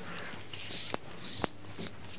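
Fabric rustling as a cloth tape measure is handled and clothing shifts: two short, hissy rustles, each ending in a light click, about a second apart.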